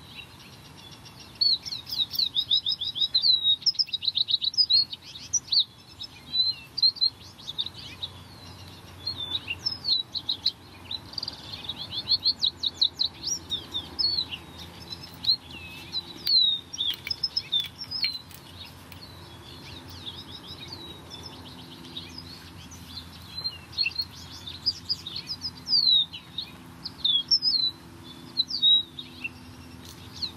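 Small songbirds chirping and singing almost without pause: quick runs of short high chirps and trills, with sharp downward-sweeping notes in between.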